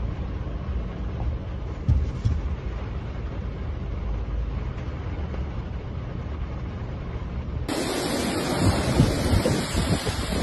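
Low, rumbling wind and rain noise on a phone microphone over a flooded street, with a couple of bumps about two seconds in. Near the end the sound changes abruptly to a brighter rushing of floodwater and wind, with louder gusts.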